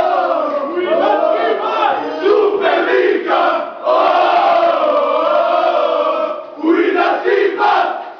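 A group of young football players chanting and singing loudly together in unison, a celebration chant with long held shouted notes. It breaks off briefly near the end, then starts up again.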